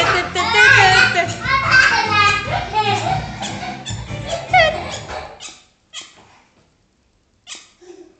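A children's song with singing over a steady bass beat playing from a television, ending about five seconds in. Two brief short sounds follow over near quiet.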